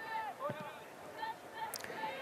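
Faint on-pitch ambience of a football match: distant voices calling and shouting across the field over a low background haze.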